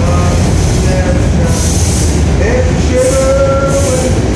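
A train passing close by: a loud, steady rumble, with drawn-out pitched tones over it, one sliding up about halfway through and then holding.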